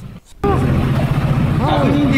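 Small sappa boat's outboard motor running steadily at low speed. It comes in suddenly about half a second in, after a brief near-silent gap, with a voice faintly over it.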